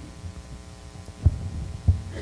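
Steady electrical hum from the PA system, with two dull low thumps on the podium microphone, one a little over a second in and another near the end, as it is handled at the lectern.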